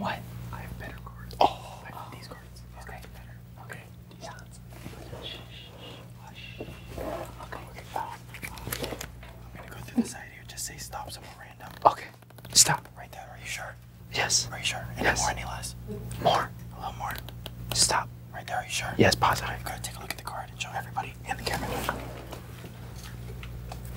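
Several people whispering to each other, with soft clicks and taps in between and a steady low hum underneath.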